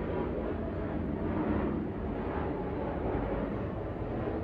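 Steady low rushing hum with no distinct clicks or knocks, an unchanging background noise such as a fan or motor running.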